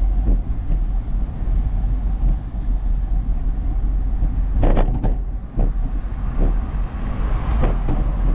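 Steady low wind rumble buffeting the microphone of a camera on a moving bicycle, with road noise from the tyres on pavement. A few sharp knocks come about five seconds in and again near the end.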